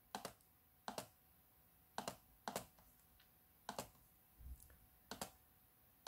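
Laptop pointing-device button clicks: about seven short, sharp clicks at uneven spacing, with a duller low thump about four and a half seconds in.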